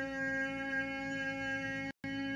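A steady drone holding one low note with many even overtones, unchanging in pitch and level. The sound cuts out for a moment near the end.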